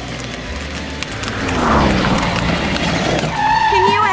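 Vehicle driving noise, a rushing sound that swells to its loudest about two seconds in and then eases, over background music.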